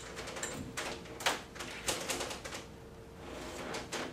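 Irregular plastic clicks and knocks from oxygen tubing and an air-entrainment (Venturi) mask being handled and connected at a wall oxygen flowmeter, the loudest about a second in. A faint steady tone sits underneath and fades about three seconds in.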